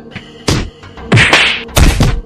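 A quick series of loud slaps and blows landing, about three within two seconds, over background music.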